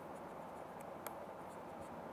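Faint scratching of a stylus writing on a pen tablet, with a couple of light tip ticks, over a steady low hiss.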